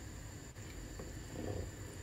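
Faint, steady low background noise with no distinct event: room tone, with perhaps a soft stir of the pot's liquid about a second and a half in.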